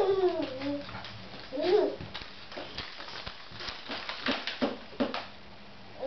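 A baby squealing: two short calls that slide down and up, near the start and at about two seconds. Then a run of short clicks and creaks from the baby jumper as she bounces in it.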